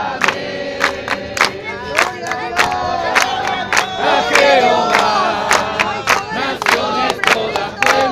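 A congregation of many voices singing together with steady, rhythmic hand clapping, a little under two claps a second.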